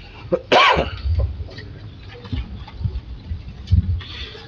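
A person's cough about half a second in, followed by scattered low knocks and rustling in a quiet, reverberant meeting room.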